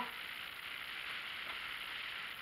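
Steady, even hiss with no distinct events: the background noise of the recording.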